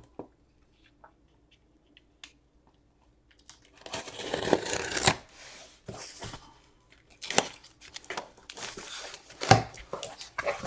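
Sealed cardboard case being torn and cut open: a burst of tearing cardboard about four seconds in, then rustling and flap handling with a sharp knock near the end.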